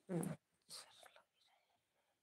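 A woman's voice, a few soft, half-whispered words, briefly at the start and again about two-thirds of a second in.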